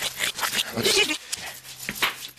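A person's wordless vocal sounds, irregular and breathy.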